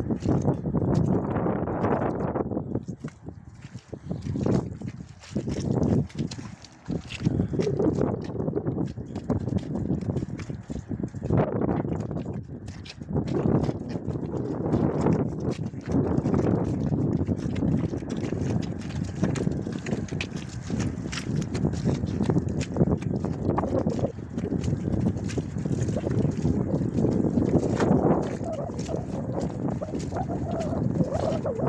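Horses moving about on muddy ground: a stallion with a mare and foal, hooves and the horses' own sounds coming in irregular bursts. Wind noise on the microphone runs under it.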